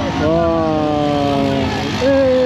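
Drag racing motorcycle's engine running at high revs down the strip, one long engine note whose pitch slides slowly downward.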